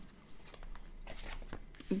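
Tarot cards being drawn off the deck in the hands and laid on the table: several short papery flicks and slides of card stock.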